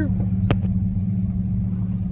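Truck running on the road, heard from inside the cab as a steady low engine and road hum. A single sharp click comes about half a second in.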